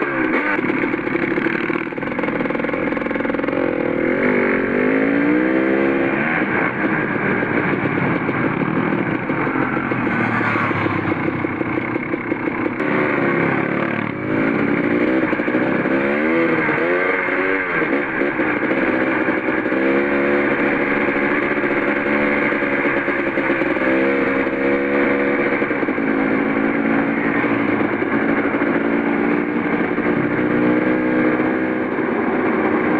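Dirt bike engine heard from on the bike, running continuously and repeatedly revving up and falling back as the rider works through the throttle and gears and picks up speed.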